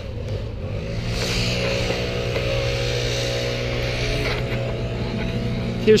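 A motor vehicle's engine running steadily, an even hum with a hiss over it, growing stronger about a second in.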